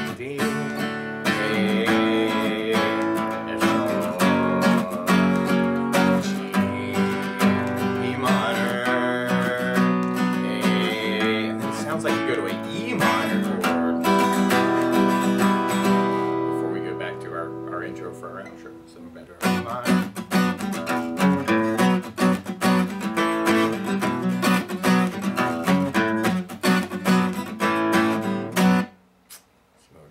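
Steel-string acoustic guitar strummed in a steady down-up pattern through the chords G, D, A and B minor. Around sixteen seconds in the strumming thins and lets a chord ring down. It picks up again about three seconds later, then stops abruptly about a second before the end.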